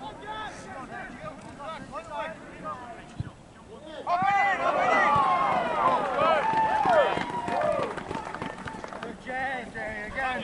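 Several voices shouting and calling over one another on a soccer field, getting louder and busier about four seconds in.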